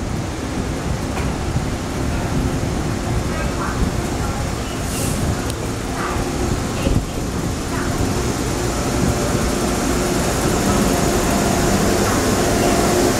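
TRA EMU1200 electric multiple unit pulling away from the platform and drawing alongside, its running noise and a steady hum growing louder in the last few seconds as the cars pass close by.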